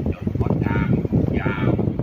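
A voice speaking Thai in short phrases over a steady low rumble.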